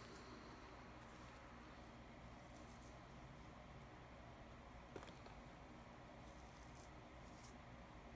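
Near silence, with faint rustling of fingers spreading and patting potting mix over freshly sown seeds, and one small click about five seconds in.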